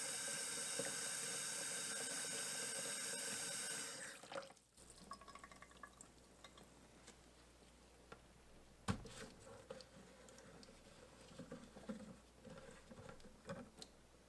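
Kitchen faucet running hot water into a pot in the sink, shut off about four seconds in. Then quiet handling of a plastic container, with one sharp knock near the middle and small clicks as its screw lid is turned off.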